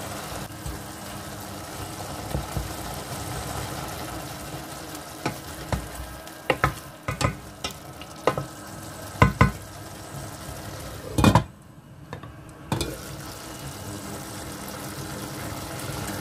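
Diced chicken frying with a steady sizzle in a stainless steel pot, as a wooden spoon stirs it and knocks sharply against the pot several times in the middle of the stretch. The sizzle drops away for about a second near the three-quarter mark.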